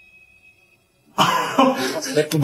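A faint held tone fades out early on. About a second in, a loud burst of a person's voice sets in and carries on.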